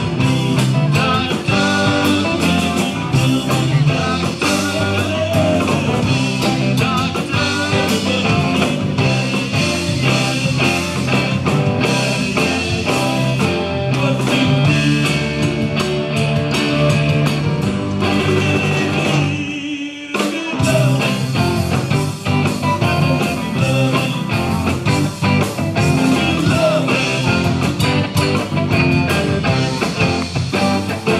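Live rock band playing: electric guitars, bass, drums and keyboard in a loud, full mix. The music breaks off for about a second around two-thirds of the way through, then the band comes straight back in.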